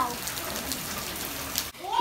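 Steady rain falling on gravel and tiled paving, an even hiss with the fine patter of drops; it cuts off suddenly near the end.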